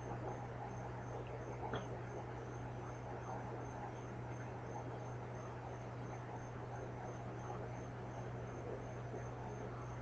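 A cricket chirping steadily, a regular high pulse about three times a second, over a low steady hum and hiss.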